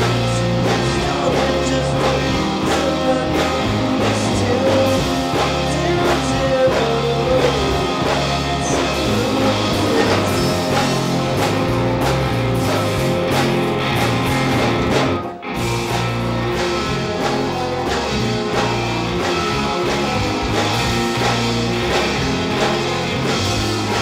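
A rock band playing live and loud, with electric guitars and bass over a steady beat. The sound drops out for an instant about two-thirds of the way through, then the band carries on.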